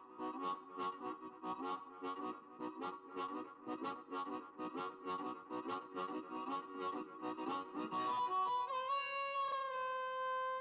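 Blues harmonica playing a chugging chord rhythm, about four pulses a second, then near the end a long held note with a slight bend.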